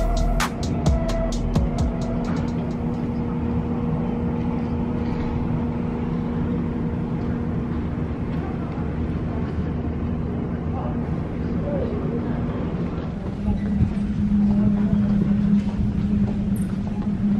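Steady drone of jet aircraft engines with a low hum. About 13 seconds in, the hum drops slightly in pitch and grows louder.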